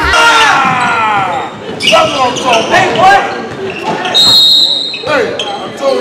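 Basketball game sound in a gym hall: a ball bouncing on the hardwood court among shouting voices, and a referee's whistle blown once, about half a second long, a little past the middle.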